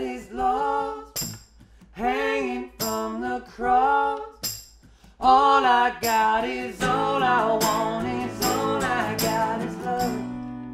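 A man singing a melody without clear words over sharp, evenly repeated percussion hits. About seven seconds in, two acoustic guitars come in strumming sustained chords under the voice.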